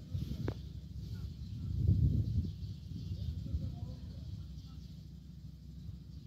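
Low rumbling noise on the microphone, loudest about two seconds in, with a single short tap about half a second in.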